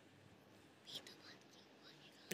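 Near silence: room tone with a faint, short hiss of breath about a second in.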